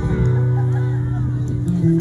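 Acoustic guitar amplified through large outdoor PA speakers during a sound check, notes held and ringing steadily, with a change of note near the end.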